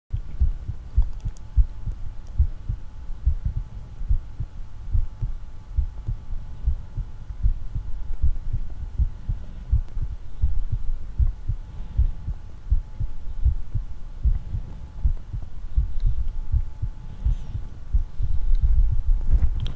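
Muffled, irregular low thumps and rumble on the microphone of a camera carried along on a walk, several a second, with a faint steady hum behind them.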